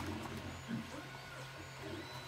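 A single sharp plastic click as a DJI Mini 3's folding arm is swung into position, then quiet handling of the drone's plastic body over a low steady hum.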